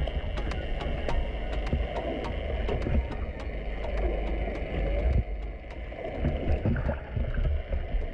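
Underwater sound picked up by a camera: a low rumble of moving water with many sharp clicks scattered throughout.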